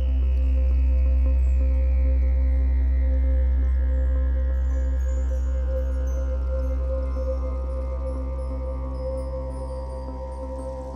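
Ambient background music: a steady low drone under held tones, with a sweep that slowly falls in pitch, fading a little near the end.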